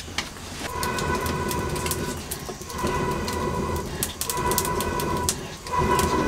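Blowing through a blowpipe into a wood fire to fan it: four long breaths of about a second each, each with a steady hollow whistle from the pipe over a rushing hiss, and scattered sharp clicks between them.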